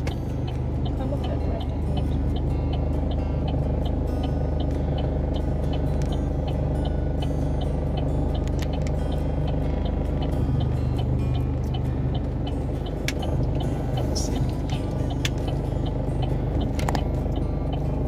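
A car's engine running at idle and low speed, heard from inside the cabin, with music playing over it and a light, evenly spaced ticking throughout.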